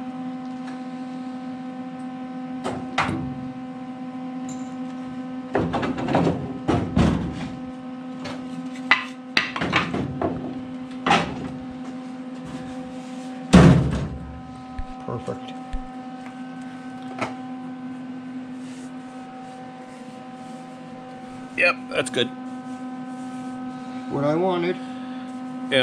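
A steady electrical hum runs underneath scattered knocks and clanks of metal being handled in a workshop, the heaviest knock about halfway through.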